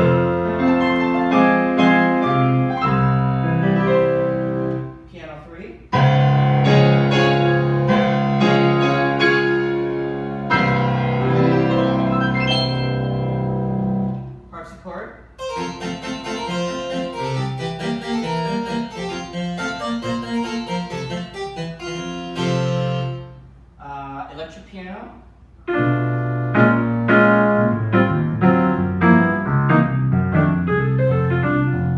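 Viscount Concerto 5000 digital grand piano played in a piano voice through its speakers: chords and runs, dropping quieter briefly about 5, 14 and 24 seconds in. In the middle comes a brighter, busier stretch of quick notes.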